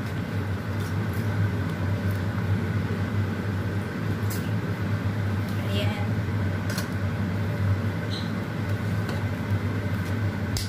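A steady low mechanical hum runs without a break, with a few light clinks of a utensil against the pot now and then.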